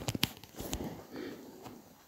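Hands tapping and smoothing folded cotton print fabric on a table: a few soft taps in the first second, then faint brushing that dies away.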